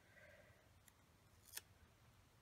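Near silence: faint handling of paper sticker sheets and washi tape pieces, with one soft click about one and a half seconds in.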